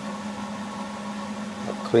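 A steady machine hum with a faint even hiss and no welding crackle.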